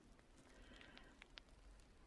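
Near silence: room tone, with a few faint ticks near the middle.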